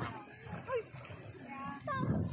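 Distant voices calling and shouting, heard as a few short, high, gliding calls spread across the two seconds over a low rumble.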